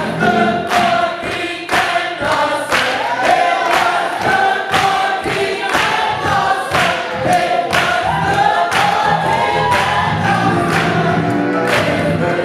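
Gospel choir singing with steady hand-clapping on the beat, about two claps a second.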